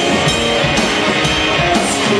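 Live rock band playing an instrumental passage on electric guitar and drum kit, with a sharp drum hit about twice a second.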